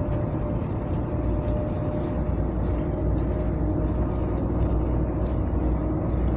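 Mercedes-Benz Actros 2040 truck cruising in top gear (8th high), heard inside the cab. It makes a steady low drone of engine and road rumble with a faint steady hum.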